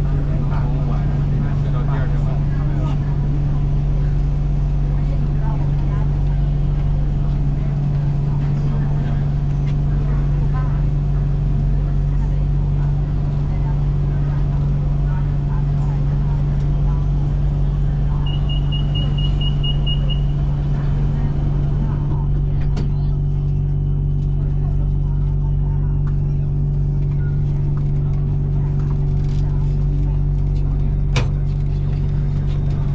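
Steady low hum of a BTS Skytrain car standing at a station, heard from inside the car. About 18 seconds in, a quick string of high beeps sounds: the door-closing warning.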